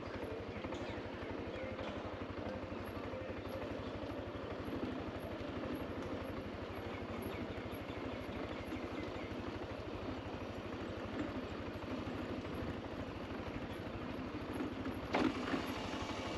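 Motor scooter riding down a steep village road: a steady engine note with fast, even firing pulses under constant wind and road noise.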